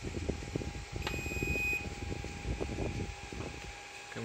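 A switch clicks about a second in, and a 12 V 500 W inverter answers with one short, high beep as it powers on. A faint steady hum runs underneath.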